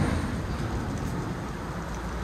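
Road traffic noise: a steady hiss of tyres and engines, with a passing vehicle's low rumble fading away.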